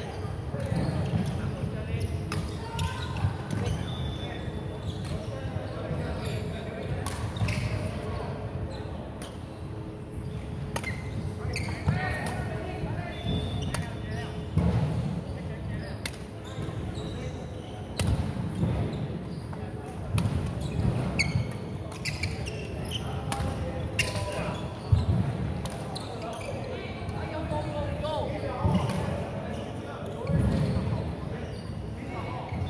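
Badminton play in a large hall: sharp racket hits on the shuttlecock and players' footsteps on the wooden court, with voices in the background and echo from the hall.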